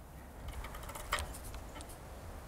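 Quiet outdoor background: a faint low rumble like wind on the microphone, with a few faint ticks and rustles, the clearest about a second in.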